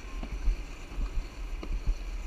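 Alpine slide sled running down its track: a low rumble with irregular knocks and bumps as it rides the chute.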